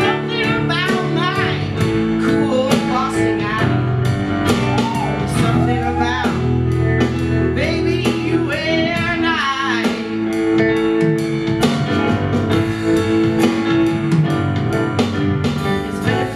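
Live rock band playing: drums, bass guitar, electric and acoustic guitars and keyboard together, with a lead line sliding up and down in pitch over the steady beat.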